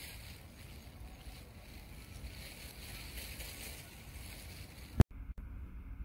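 Steady outdoor background noise with a low wind rumble on the microphone. About five seconds in, a single sharp click cuts in with a brief dropout, and the background is quieter and duller after it.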